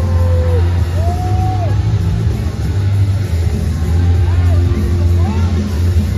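Loud arena PA music with a heavy, steady bass, with crowd voices shouting over it, a few drawn-out yells rising and falling.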